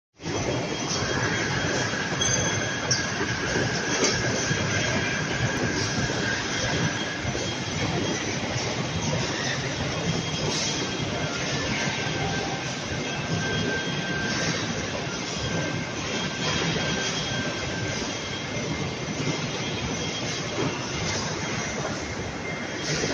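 Rolam 1450 automatic corrugated-box folder gluer running, carrying board blanks along its belts and rollers: a steady dense mechanical clatter with a thin squeal that drifts in and out twice.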